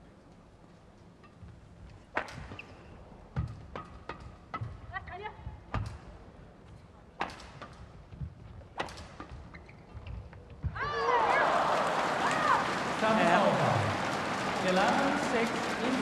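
Badminton rally: sharp racket strikes on a shuttlecock about once a second. About eleven seconds in, the rally ends and the arena crowd breaks into loud cheering and shouting.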